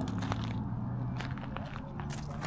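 Footsteps crunching at irregular intervals, over a steady low hum.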